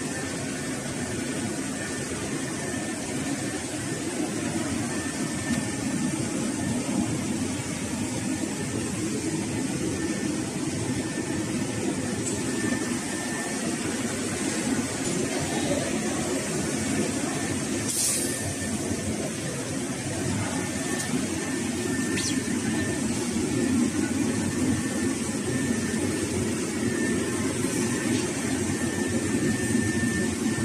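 A 12 kW radio-frequency belt-cleat welding machine running: a steady low hum throughout, with a thin high whine that comes and goes. Two sharp clicks stand out, one about eighteen seconds in and another about four seconds later.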